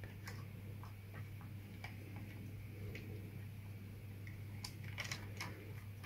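Faint scattered clicks and ticks of a plastic LEGO monorail carriage being handled and moved along its plastic track, with a few more clicks about five seconds in, over a steady low hum.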